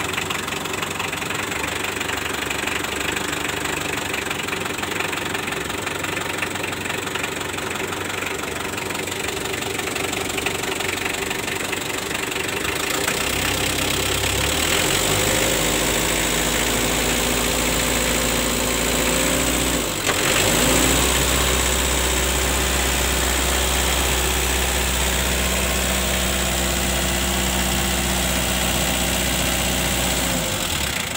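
Mitsubishi L300 four-cylinder diesel engine idling with a steady diesel clatter, freshly started after a timing belt replacement. Around the middle its note deepens and grows a little louder, with a brief dip about two-thirds of the way in.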